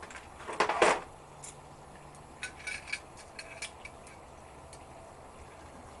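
Metal clinks and clicks from a brake-line double-flaring tool being handled as its parts are set on the tube: a louder clatter about half a second in, then light taps and short metallic pings over the next few seconds.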